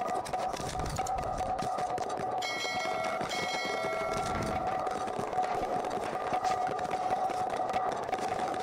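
Steady ambient background soundtrack with a droning hum, and a bright ringing tone held twice in quick succession from about two and a half seconds in.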